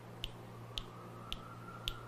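Faint, sharp clicks repeating evenly about twice a second, four in all, over a steady low hum.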